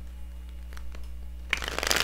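A tarot deck being shuffled: a short burst of rapid card flicks about a second and a half in, over a steady low electrical hum.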